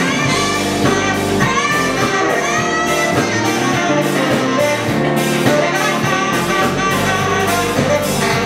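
A live band playing an instrumental passage: electric guitar with keyboard, drums and saxophone, some notes bending in pitch.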